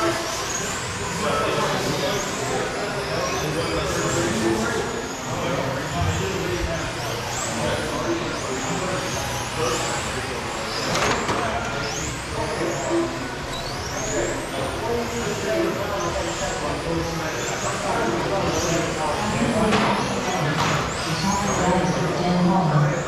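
Electric RC touring cars with 21.5-turn brushless motors whining as they race, with many short rising whines one after another as the cars accelerate out of corners.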